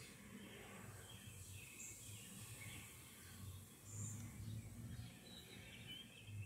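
Faint outdoor background: a low, uneven rumble with a few faint, short bird chirps.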